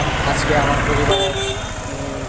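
A man talking over the steady, evenly pulsing low running of a small three-wheeled goods vehicle's engine.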